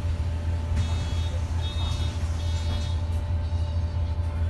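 City bus engine idling, a steady low hum heard from inside the passenger cabin, with a few short high-pitched tones coming and going between about one and three seconds in.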